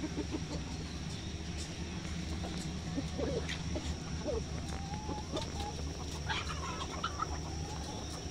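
Flock of chickens clucking, with short calls scattered through and busiest in the middle few seconds. Underneath runs a steady low hum and a thin, steady high-pitched tone.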